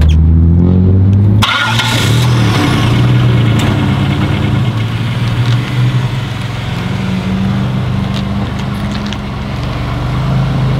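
A car engine running close by with a steady low hum. About a second and a half in, the sound turns suddenly louder and brighter, with added hiss, as the car is moved.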